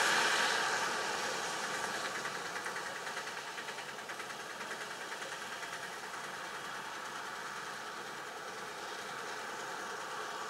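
A pickup truck passes close, and its engine and tyre noise fade over the first few seconds as it drives off. A vehicle engine keeps idling steadily close by.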